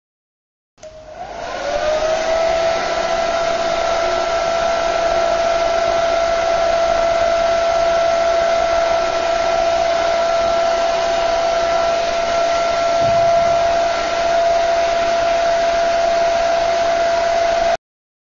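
Small electric fan motor spinning up about a second in, its whine rising briefly and then holding steady over a rush of air, until it cuts off suddenly near the end.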